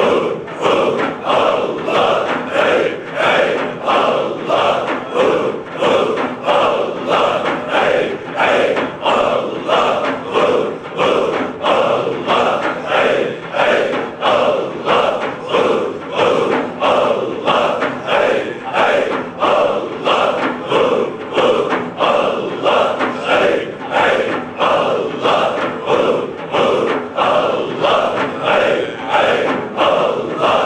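A large group of men chanting dhikr in unison: a loud, driving, rhythmic chant that pulses about four times every three seconds, with daf frame drums beating along.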